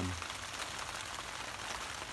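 Heavy rain falling steadily on the river and on the tarp over the boat, an even hiss.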